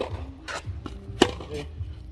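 Tennis ball struck by a two-handled racket in a practice rally: a sharp hit at the start and a louder one a little over a second in, with lighter knocks in between.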